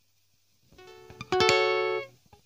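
Acoustic guitar played high on the neck in a D minor shape: a few soft plucked notes, then about 1.3 s in louder notes ring out together and fade near the end.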